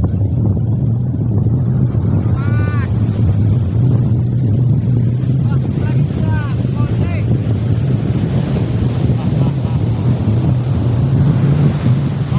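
Heavy wind rumbling on the microphone over surf breaking on a sandy beach. A few short pitched calls come through the noise about two and a half seconds in and again around six to seven seconds.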